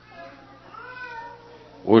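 One faint, pitched cry lasting about a second, its pitch rising and then falling, like a cat's meow.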